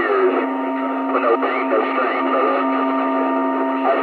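CB radio receiver audio during a skip contact. Steady whistling tones come through: one low and continuous, higher ones that start shortly after the beginning and stop together near the end. Under them are a hiss of static and faint, garbled voices, all with a narrow, tinny radio sound.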